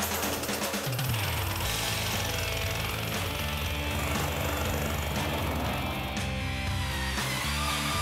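Cordless Bosch jigsaw running steadily as it cuts through a large white wall panel, with background music underneath.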